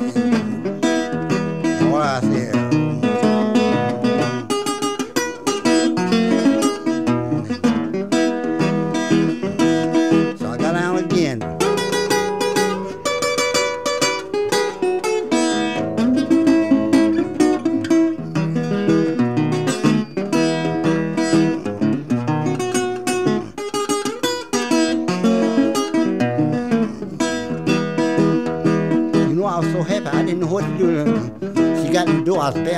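Acoustic blues guitar playing an instrumental passage of quick plucked notes and chords, with a couple of sliding tones about two and eleven seconds in.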